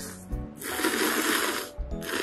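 A person slurping cup ramen noodles: one long, noisy slurp from about half a second in, lasting roughly a second, with a couple of soft knocks around it.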